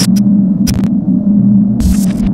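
An electronic intro drone: a loud, steady low hum that throbs, cut by short hissing swooshes with a low thump about every second.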